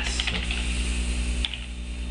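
A few computer keyboard keystrokes typing a web address: a quick run of clicks at the start and one more about a second and a half in, over a steady low hum.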